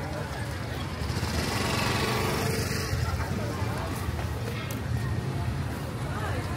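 A motor scooter's engine running close by, getting louder for a couple of seconds from about a second in, over the chatter of a market crowd.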